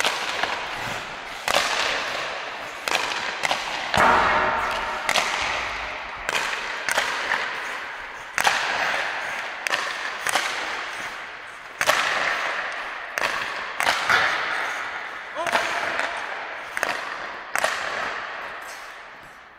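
Ice hockey shots: sharp cracks of stick striking puck and pucks hitting the boards and net, about one every second or so. Each crack rings on in the long echo of a large, empty indoor rink.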